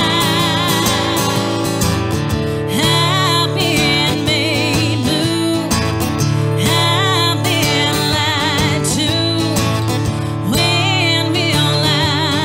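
A woman singing a country-style song live, holding long wavering notes, over her own strummed acoustic guitar.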